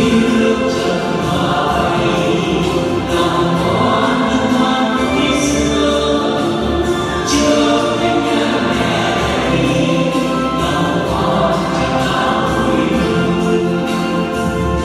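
A choir singing a Vietnamese Catholic flower-offering hymn with instrumental accompaniment.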